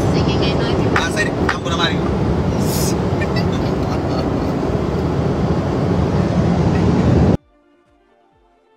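Loud steady engine and airflow noise inside a small aircraft's cabin, with voices over it in the first couple of seconds. It cuts off abruptly about seven seconds in, leaving faint music with a soft beat.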